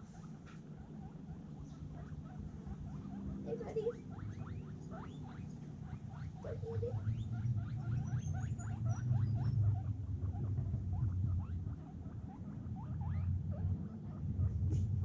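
Guinea pigs squeaking as they come to food: many short rising squeaks, several a second, starting about four seconds in, over a low steady rumble.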